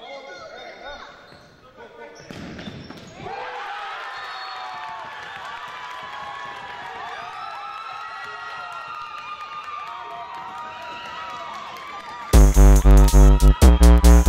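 Futsal ball bouncing and being kicked on a hardwood gym floor, with players' voices in the echoing hall and a thump about two and a half seconds in. About twelve seconds in, loud electronic music with a heavy, pulsing beat cuts in.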